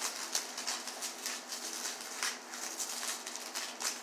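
Packing wrap crinkling and rustling in quick irregular crackles as small glass tasting spoons are unwrapped by hand.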